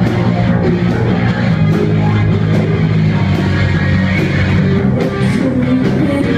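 Live rock band playing loud: electric guitar and drum kit, with steady low notes and regular cymbal crashes.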